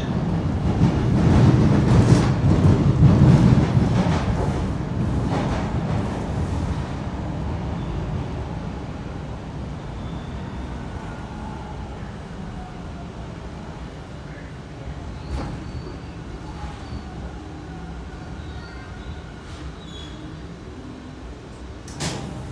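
TTC subway train running, with a loud low rumble of wheels on track for the first few seconds that fades steadily as the train slows into a station. A faint whine runs under the later part.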